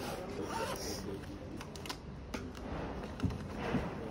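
Paper rustling as textbook pages are turned and handled, with small handling clicks, then a fabric pencil case being handled and unzipped near the end.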